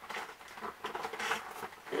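Fingers scrabbling and scraping inside a cardboard advent-calendar compartment to pull out a slim makeup brush, with irregular small clicks and rustles.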